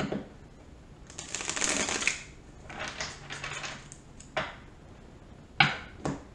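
A deck of tarot cards being shuffled: a rapid flutter of card edges about a second in, a shorter, softer one around three seconds, then two sharp taps near the end, the second the loudest.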